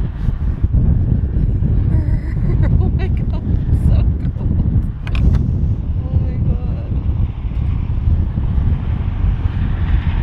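Wind buffeting the microphone: a steady, gusty low rumble, with a few light clicks about three to five seconds in.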